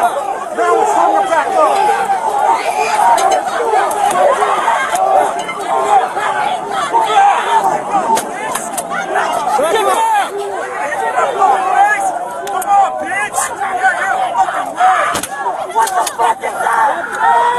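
Crowd of protesters shouting at close range, many voices at once, recorded on a police body-worn camera's microphone, with a single sharp knock about fifteen seconds in.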